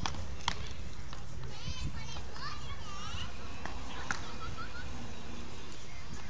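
Beach tennis paddles striking the ball during a rally: a few sharp knocks, two in quick succession at the start and two more about four seconds in.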